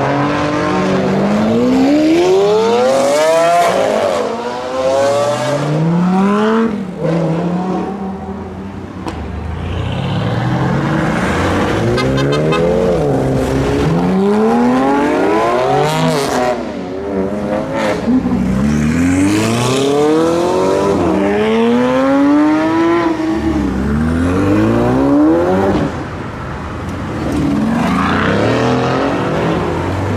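Performance car engines accelerating hard one after another along a street, each climbing in pitch and dropping back again and again through gear changes.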